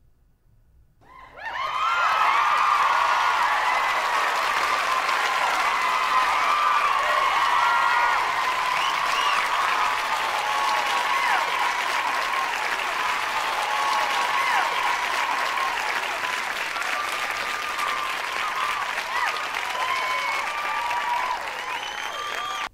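A large audience applauding with cheering voices over the clapping. It swells up about a second in, holds steady and loud, then cuts off just after the end.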